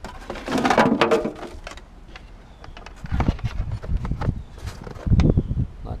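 Junk being rummaged and shifted inside a metal roll-off dumpster: a loud scrape as a wooden box is pulled, then scattered knocks and clatters and a couple of heavier thuds, over a low wind rumble.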